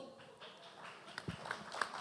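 Quiet hall, then from about a second in a few faint, irregular taps.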